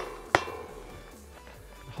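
A single sharp clink with a short ringing tail about a third of a second in, over faint background music.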